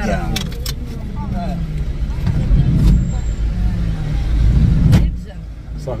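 Low engine and road rumble heard inside a van's cabin. It swells twice, with a few sharp clicks and faint voices in the background.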